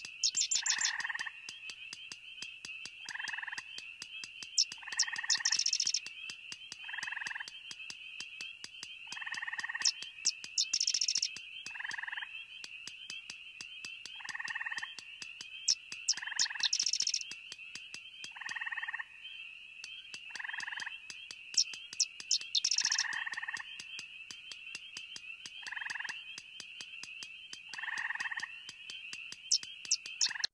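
Frog chorus: a short croaking call repeats about every two seconds over a continuous high-pitched trill, with a louder, higher call about every six seconds.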